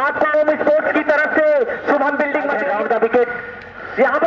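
A man speaking continuously: Hindi cricket commentary.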